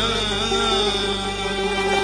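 A male singer performing an Uzbek song, his voice wavering in an ornamented line at the start over steady, sustained accompanying instrument tones.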